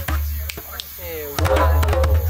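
A few hand strokes on a djembe, some with a deep low boom, while a person's voice sounds over them.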